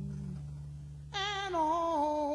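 Blues recording: a held low note from the band fades out, then about a second in a woman's voice comes in with a sung line, wavering with vibrato and stepping down in pitch.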